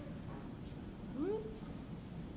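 A man's brief rising murmur, like a questioning "hm", a little over a second in, over a low steady room hum.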